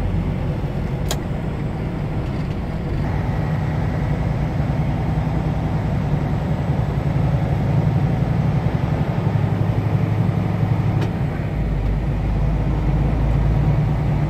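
Semi truck's diesel engine running under way, heard from inside the cab, a steady low drone whose note shifts about three seconds in and again near the end. A faint click comes about a second in.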